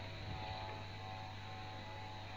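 Steady low electrical hum with faint hiss and a few faint steady whine tones, the background noise of a radio reception in a pause between programme speech.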